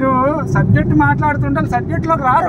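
Mostly a man's speech. Under it, the steady low rumble of a car driving on a road, heard from inside the cabin.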